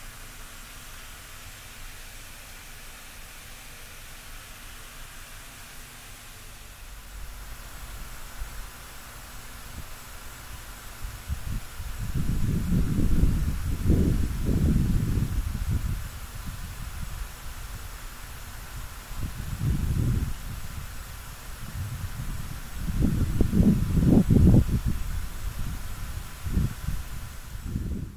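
Wind buffeting the microphone outdoors, a steady hiss at first, then several irregular low gusts from about twelve seconds in, the strongest near the end.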